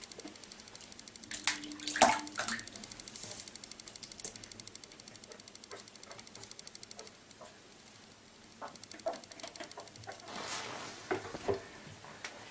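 Water splashing and lapping in a bathtub as a cat swims, with sharper splashes about two seconds in and again near the end, and a faint regular rippling in between.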